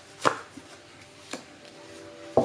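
Two sharp taps of cards against a tabletop about a second apart, the first much louder, as oracle cards are laid down.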